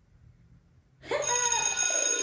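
A mobile phone ringtone starts suddenly about a second in, loud and bright, with many steady high tones ringing together and a shifting melody beneath them. Before that there is near silence.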